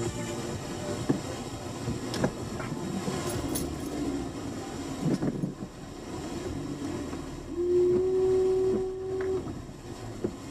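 Car cabin noise while driving slowly, with scattered knocks and clicks, and a horn held in one steady tone for nearly two seconds about three-quarters of the way through.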